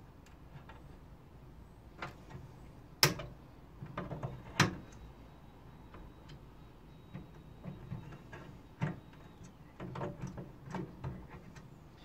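Small sharp cutters snipping the tops off the clips that hold a PC motherboard in its metal case: two sharp clicks about three and four and a half seconds in, among lighter ticks and knocks of work inside the case.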